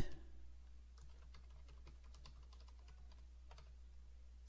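Faint typing on a computer keyboard: scattered, irregular key clicks over a low steady hum.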